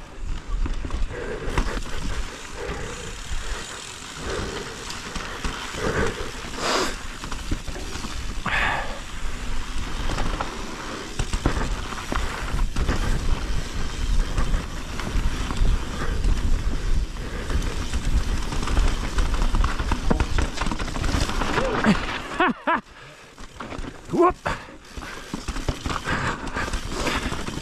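Mountain bike descending rocky dirt singletrack: tyres rolling over dirt and stones with frequent knocks and rattles from the bike, over a low rumble of wind on the microphone. It goes quieter for a moment shortly before the end, followed by a sigh and a laugh.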